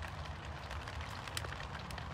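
Rain falling on a fabric shelter roof overhead: a steady hiss with scattered ticks of single drops.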